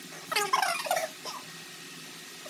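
A short burst of a person's voice under a second long, about a third of a second in, not words but a brief vocal sound; then low room tone.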